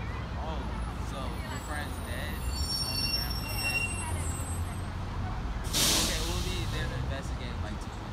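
Outdoor background: a steady low rumble with faint distant voices and chirps, cut by one brief loud hiss about six seconds in.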